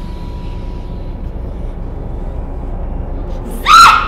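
A low steady drone with a thin high tone that fades out about a second in; near the end a short, loud, high-pitched human scream cuts across it.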